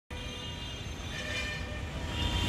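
A drawn-out steady horn over a low rumble of distant traffic.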